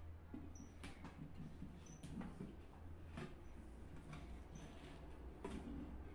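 Faint handling of rubber bands cut from bicycle inner tube as they are stretched around a vase form of ceramic tile strips: light rubbing and a few sharp ticks, over a steady low hum.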